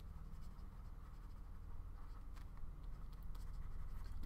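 Faint taps and scratches of a stylus on a tablet screen as a few words are handwritten, over a low steady hum.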